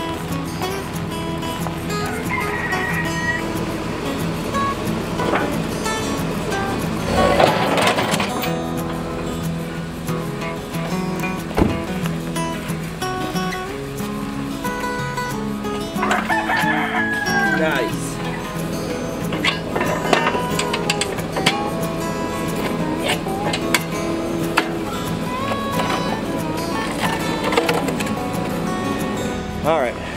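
Background music, with a rooster crowing several times over it.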